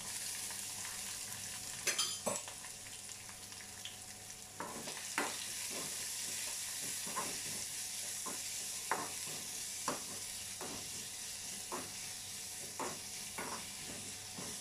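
Sliced onions and dried red chillies sizzling in oil in a kadai, with a steady high hiss, while a metal spoon stirs them, scraping and tapping against the pan. The taps are irregular and become frequent from about five seconds in.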